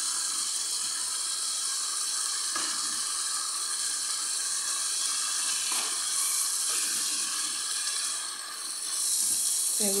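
Minced beef, mixed vegetables and freshly added chopped tomatoes sizzling steadily in a frying pan as they are stirred with a wooden spoon; the sizzle dips briefly near the end.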